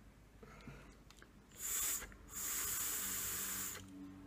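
Two primer puffs drawn through a Fogger V4 rebuildable atomizer: air hissing through its airflow holes with a thin high whistle. A short draw comes about halfway through, then a longer one of about a second and a half, pulling juice into the cotton wicks around the coils.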